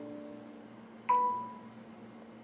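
Electronic notification chimes: a chord of tones dies away, then about a second in a single bright notification ding sounds and fades within half a second, the phone's alert for the incoming connection request.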